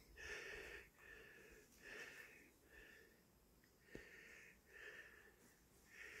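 Faint human breathing close to the microphone: a run of quick breaths in and out, about six or seven puffs, with a small click about four seconds in.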